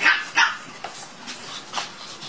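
Shih Tzu puppy barking: two quick high yaps right at the start and a third, softer one near the end.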